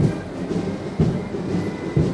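Armoured military vehicles driving past with their engines running, over a steady rumble and a sharp knock about once a second.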